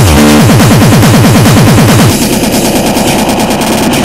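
Terrorcore hardcore electronic music at 280 bpm: a rapid roll of kick drums, each stroke dropping in pitch, in a fast gunfire-like rattle. About halfway through, it gives way to a denser, steadier section of the track.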